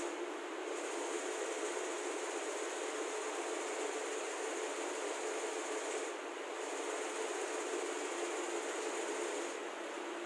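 Steady hiss with a faint steady hum, dipping briefly twice.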